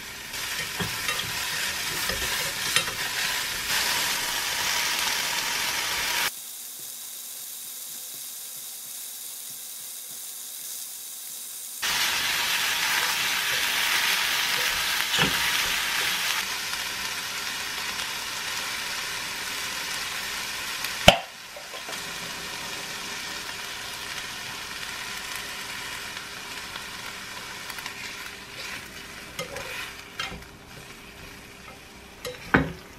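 Mushrooms and vegetables sizzling as they fry in a pan, stirred with wooden chopsticks. The sizzle drops to a quieter, duller stretch from about six to twelve seconds in, and a single sharp knock comes about 21 seconds in.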